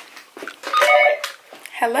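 A woman's voice: a short wordless vocal sound about halfway through, then she begins saying "hello" into a telephone handset near the end.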